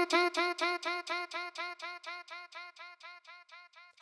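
A short vocal chop echoed by a ping-pong delay: the same sung syllable repeats about six times a second, each echo a little softer, dying away over about four seconds.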